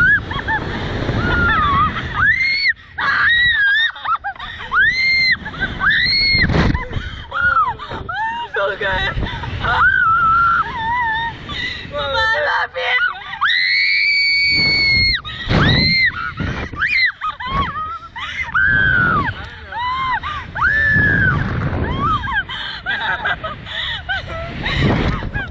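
Two riders screaming and laughing on a SlingShot reverse-bungee ride as they are flung skyward and bounce, in short rising-and-falling shrieks. One long high scream is held for about two seconds a little past halfway.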